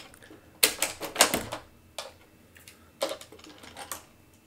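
Hard plastic clicks and snaps from a Roborock Qrevo MaxV robot vacuum's brush guard being unlatched and its main roller brush lifted out. There is a sharp click about half a second in, a close cluster of clicks just after a second, and single clicks at about two and three seconds.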